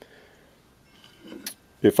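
A broken piece of glued hardwood being picked up off a workbench: faint handling sounds and one light click about one and a half seconds in, otherwise quiet room tone.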